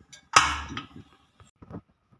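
Pressure cooker weight lifted off the vent: a sudden sharp hiss of leftover steam that fades within about half a second, followed by a few light knocks.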